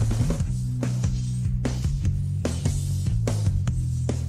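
Live rock recording with the guitars and vocals mixed down, leaving the drum kit and bass guitar playing a driving, steady beat.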